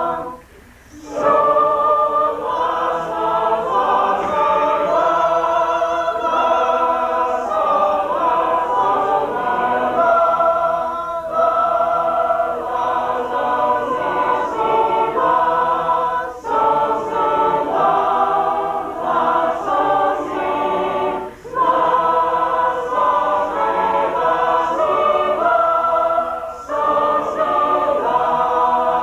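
A mixed group of men's and women's voices singing a shape-note hymn unaccompanied in parts, full and loud, with brief breaks between phrases about every five seconds.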